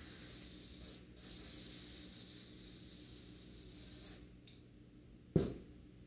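Aerosol spray adhesive hissing from a can in two long bursts, with a brief break about a second in, stopping about four seconds in. Near the end comes a single sharp knock as the can is set down on the table.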